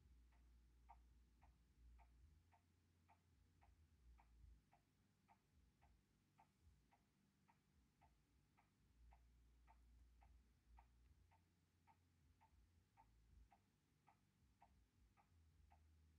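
Near silence with faint, evenly spaced ticking, a little under two ticks a second.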